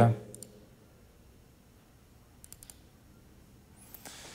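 Faint computer mouse clicks while a file is picked in a file-selection dialog: one soft click near the start, then a quick cluster of clicks about two and a half seconds in.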